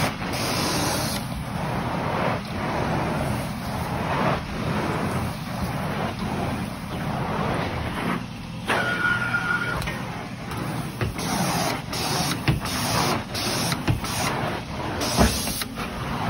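Carpet-cleaning extraction machine running, a steady hissing suction noise that dips and swells in regular strokes about once a second.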